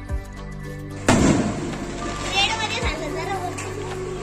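A single sharp firework bang about a second in, the loudest sound, fading over about a second. It plays over loud procession music with low thumps, and voices shout and call just after the bang.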